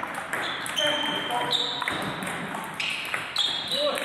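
Table tennis balls clicking off bats and tables in a quick, irregular patter from more than one table, some hits followed by a high ringing ping.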